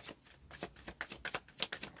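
A deck of tarot cards being shuffled hand over hand: a quick, irregular run of short card flicks.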